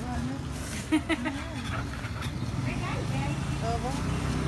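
Quiet talk over a steady low mechanical hum, with two short knocks about a second in.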